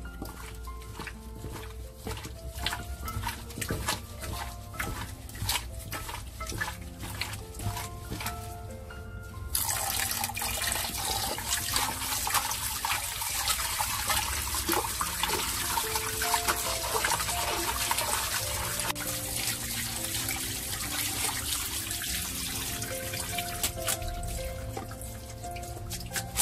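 Water running from a kitchen tap into a glass bowl of pork ribs in a stainless-steel sink. It starts suddenly about nine and a half seconds in and runs steadily until just before the end. Before it, wet clicks and squelches of gloved hands rubbing the ribs in the water; a soft background melody plays throughout.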